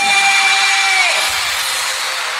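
A break in an electronic dance remix: a held synth tone for about a second, then a swelling noise sweep building up.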